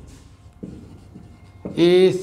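Marker pen writing on a whiteboard: faint rubbing, scratching strokes as the words are written out. A man's voice starts speaking near the end.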